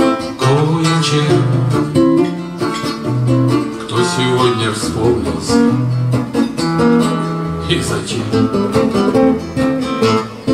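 Two acoustic guitars playing an instrumental passage between sung verses: picked melody notes over changing bass notes.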